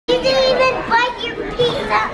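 Young children's voices, loud and excited, with high-pitched calling and chatter.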